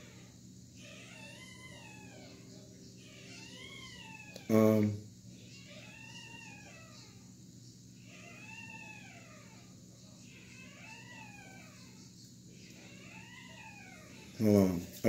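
A cat meowing again and again, faint, about one call a second, each call rising then falling in pitch. About a third of the way in there is a short, loud sound from a man's voice.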